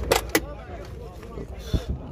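A car's rear door being opened: two sharp clicks from the handle and latch in quick succession, then a dull knock near the end as the door swings open.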